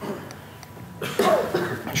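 A man coughing into a lectern microphone about a second in, after a quiet moment.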